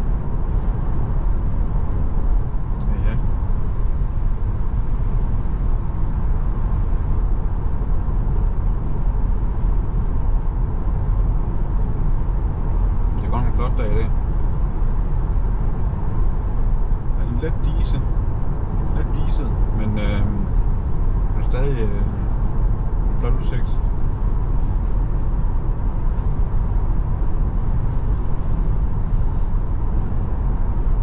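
Steady tyre and wind noise inside the cabin of a moving Tesla Model 3 Performance, an electric car with no engine sound. A few brief, faint voice-like sounds come in around the middle.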